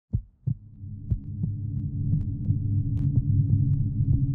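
Two deep heartbeat-like thumps close together, then a low steady hum that swells up and holds, with scattered faint sharp clicks over it: an intro soundtrack's sound design.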